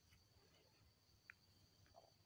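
Near silence: faint room tone with a steady high whine and one tiny click a little after a second in.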